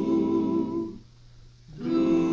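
Vocal chorus humming held close-harmony chords on a 1949 pop recording, breaking off about a second in and coming back in just before the end.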